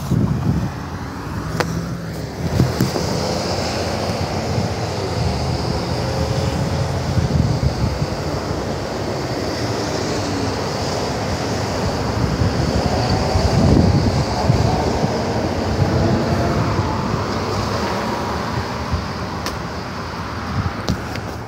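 Road traffic: cars passing close by on a multi-lane road, a steady rush of engine and tyre noise that swells as a car goes by about two-thirds of the way in.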